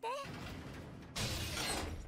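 Sound effect from the anime's soundtrack: a hissing, rattling noise that gets louder about a second in and cuts off suddenly.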